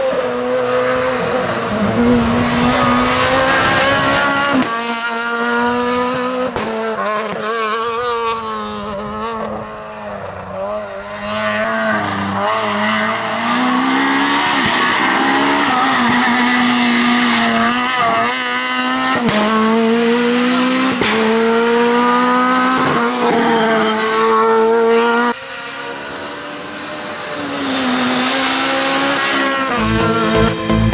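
Renault Clio R3 rally car's two-litre four-cylinder engine driven hard, the revs climbing and falling back again and again with each gear change. The sound dips briefly about ten seconds in and drops suddenly about 25 seconds in, then builds again.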